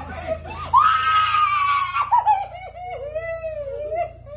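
A woman's long, high scream of surprise and joy about a second in, breaking into a wavering, sobbing cry.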